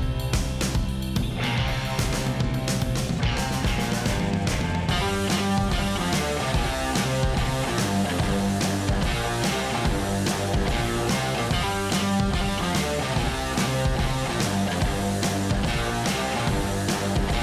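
Background rock music with guitar and a steady beat.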